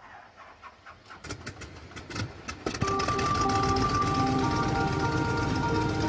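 Faint scattered clicks and knocks, then about three seconds in an aircraft's engines begin running steadily, a hum with a few held whining tones.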